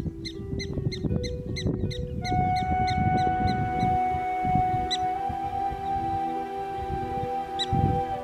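Black-tailed prairie dog barking: a quick run of short chirps, about five a second, for the first four seconds, then two single chirps later on. Background music with long held notes plays underneath.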